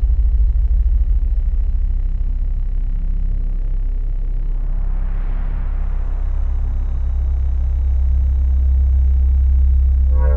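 Deep, steady rumbling drone of film sound design, with a hiss that swells and fades about halfway through.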